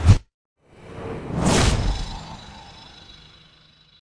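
Outro sound effects for an animated logo: a short thud right at the start, then a whoosh that swells to a peak about a second and a half in and slowly fades away.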